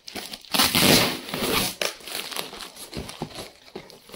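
Packing tape being ripped off a cardboard box and the flaps pulled open. There is one long, loud rip in the first two seconds, then softer crinkling and rustling of cardboard.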